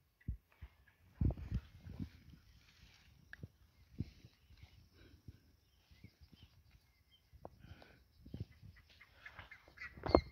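Irregular soft thumps and rustling of footsteps and handling on waterlogged, muddy grass, loudest a little over a second in.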